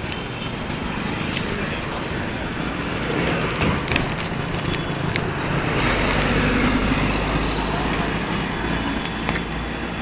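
Road traffic noise of a busy street: vehicles running and passing. A low steady engine drone comes in a little past halfway.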